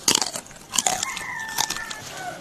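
Close-up chewing and crunching of food, with a sharp crunchy bite at the start and another just under a second in.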